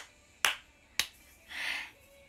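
Sharp clicks from hands right by the phone: one at the very start, then two more about half a second apart, followed near the end by a short breathy hiss.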